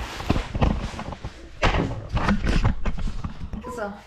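Irregular knocks, clicks and short clatters of things being handled on a kitchen counter beside an espresso machine, over a low rumble.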